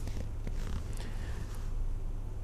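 Steady low hum with faint background hiss.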